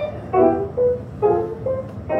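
Electric stage piano played solo: a short phrase of about five separate notes and chords, each ringing briefly and dying away before the next.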